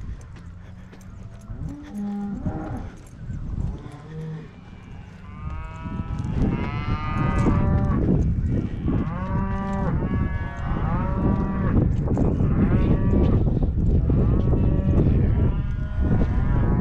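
Cattle mooing: a few scattered calls at first, then from about five seconds in many loud calls overlapping without a break. It is the bawling of cows and calves just separated for weaning.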